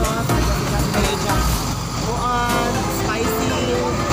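Voices talking over a steady low rumble of road traffic.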